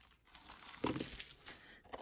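Faint crinkling and rustling of plastic card packaging handled by hand while a trading-card blaster box is opened and its packs taken out, with one brief sharper rustle a little under a second in.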